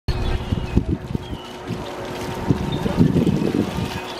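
Wind buffeting the camera's microphone in irregular gusts, strongest in the first second and again in the second half, over a faint steady hum.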